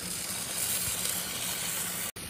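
Italian sausage, peppers and potatoes sizzling in a grill pan over a hot grill: a steady hiss with a low hum underneath.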